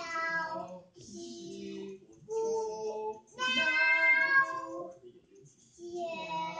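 A toddler singing, with a couple of long, held high notes in the middle.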